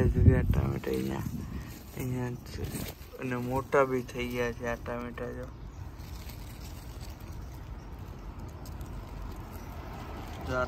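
A person's voice talking in the first half, then only steady low outdoor background noise. A low rumble on the microphone comes at the very start.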